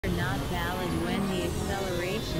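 A voice with no clear words over low, steady synthesizer drones, with a faint high tone gliding slowly downward about halfway through.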